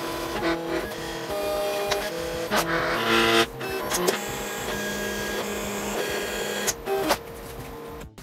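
Silhouette Cameo electronic vinyl/paper cutting machine cutting a printed overlay: its stepper motors whine at steadily held pitches that shift every fraction of a second as the blade carriage and rollers move, with a few sharp clicks. The cutting stops about seven seconds in.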